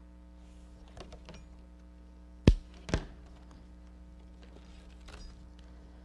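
Two sharp snips about half a second apart, about two and a half seconds in: cutters going through a length of number 6 round reed, with a few faint clicks of the reed being handled around them. A steady low electrical hum lies under it.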